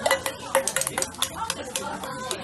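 Metal spatula and a steel bowl clattering and scraping against a flat iron griddle while shredded cabbage is piled and shaped: a quick, irregular run of sharp clacks.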